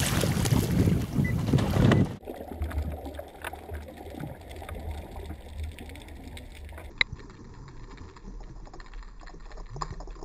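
Water splashing and rushing at the surface as a diver enters the sea, cutting off suddenly about two seconds in to the muffled hush of underwater sound with a low rumble. A single sharp click about seven seconds in.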